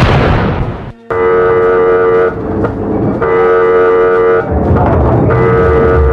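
A loud burst of gunfire-like noise that cuts off abruptly about a second in. Then a steady horn or alarm tone sounds three long blasts, each just over a second long and about two seconds apart, over a noisy background.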